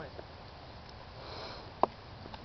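A quiet pause with a short sniff about a second and a half in, then a single sharp click near the end, the loudest sound.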